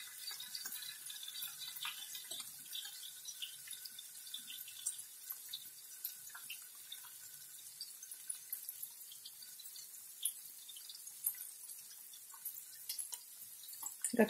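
Faint bubbling of a pot of salted water at a rolling boil on a gas stove, with the fine crackle of diced pork fat (salo) frying in a pan beside it. Now and then a soft plop as a grey potato dumpling is dropped into the boiling water.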